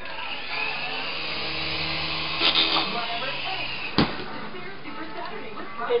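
Syma S107G toy helicopter's small electric rotor motors whirring, the pitch rising, holding, then falling away over about three seconds, with a sharp click about four seconds in. The helicopter is acting weird, which the pilot puts down to a dying battery.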